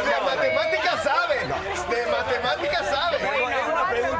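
Several adults talking over one another at once: overlapping chatter with no single clear voice.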